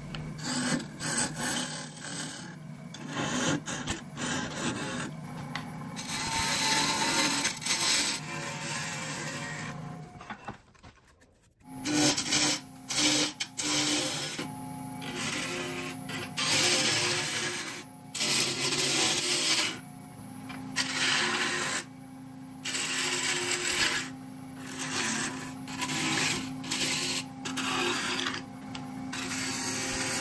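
Wood lathe running while a turning tool cuts a spinning blank of wood and blue epoxy resin: repeated hissing cuts over the steady hum of the lathe. The sound drops out briefly about eleven seconds in, and the hum comes back higher.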